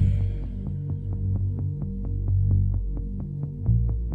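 Instrumental passage of a slow electronic song between vocal lines: deep bass notes that shift pitch under a held drone, with a soft ticking pulse about seven times a second.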